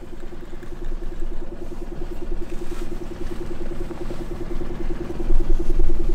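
A small engine idling steadily, its hum pulsing evenly about ten times a second over a low rumble.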